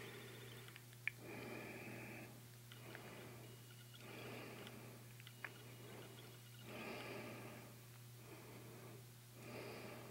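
Faint, slow breathing of a person close to the microphone, one breath about every one and a half seconds, over a steady low hum. Two small clicks, about a second in and near the middle.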